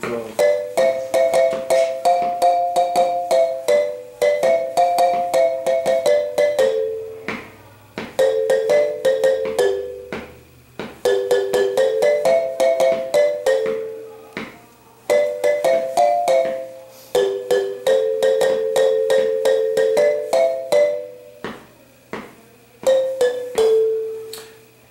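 Wooden marimba played with two mallets: the slow lead melody, phrases of quickly repeated struck notes separated by short pauses.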